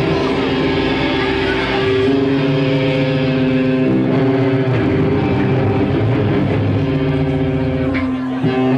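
A live metalcore band playing loud, heavily distorted electric guitar chords, each held for a second or two before changing.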